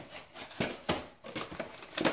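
Kitchen handling noises as oatmeal is got out: rustling with several short clicks and knocks of items being picked up and set down on the counter.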